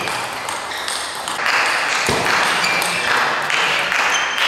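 Table tennis rally: the celluloid-type ball pinging off rubber bats and the table top in sharp, short hits. Patches of hissing noise sound between the hits.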